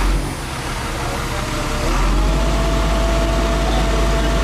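Bucket truck engine running under the Altec aerial boom. About two seconds in, it speeds up with a rising whine and then holds a steady, louder, higher-pitched hum as the boom swings the bucket.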